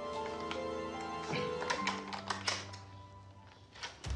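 Calm background music with held notes, over a quick series of metallic clicks and clacks from the locks of a heavy front door being undone, mostly between about one and two and a half seconds in, with one more click near the end as the door opens.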